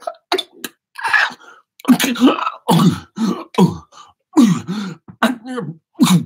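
A man's wordless vocal improvisation into a close microphone: a string of short, guttural voiced bursts with sliding pitch, broken by brief silences, with a breathy hiss about a second in.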